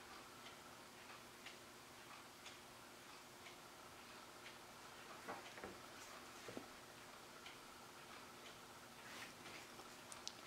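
Faint ticking of a wall clock, about one tick a second, over quiet room tone, with a couple of soft knocks midway.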